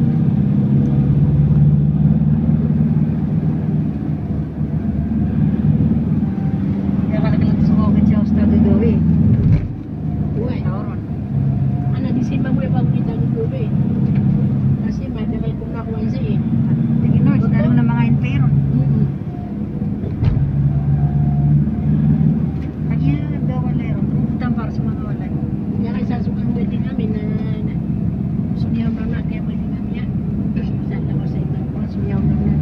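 Steady engine hum and road noise inside a moving vehicle. The engine note drops briefly twice, about ten and twenty seconds in.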